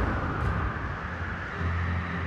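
Rough sea waves breaking, a steady rush of surf noise with a low rumble underneath.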